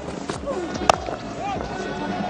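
Cricket bat striking the ball, a single sharp crack about a second in, over a steady stadium crowd background.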